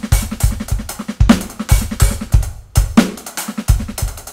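Electronic drum kit played with sticks in a fast, busy groove of kick, snare and hi-hat strokes, with crazy sticking in a modern-jazz, drum-and-bass vein. The hits come several times a second, and there is a brief lull about three-quarters of the way through.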